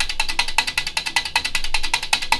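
The relays of a single-board relay computer clicking in a fast, even clatter of roughly a dozen clicks a second, as the machine runs a counting loop program.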